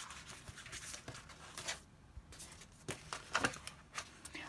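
Paper rustling, with scratches and a few small taps, as a paper envelope fold-out is handled and unfolded. There is a short lull about halfway.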